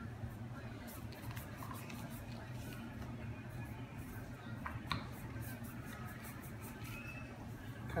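Rolling pin rolling out dough on a plastic cutting board: faint rolling and rubbing, with a couple of light clicks about five seconds in, over a steady low hum.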